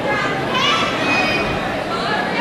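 Crowd of young people chattering and calling out at once, several high voices overlapping, echoing in a school gymnasium.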